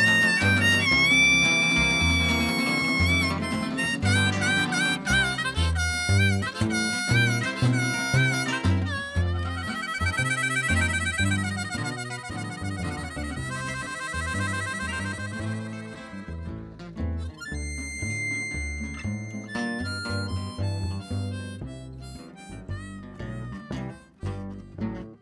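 Instrumental break of an old-time acoustic blues band: a harmonica plays the lead with bending notes over a walking upright bass and strummed acoustic guitars. The playing gets quieter and sparser about two-thirds of the way through.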